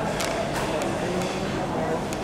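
Indistinct voices talking in a large room, with four or five sharp clicks in the first second or so.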